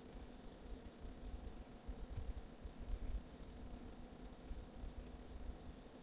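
Faint typing on a computer keyboard: a steady run of light key clicks as a sentence is typed, over a low hum.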